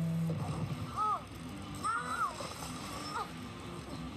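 A few short voice exclamations, each rising and then falling in pitch, about a second apart, with a brief rush of noise near the start.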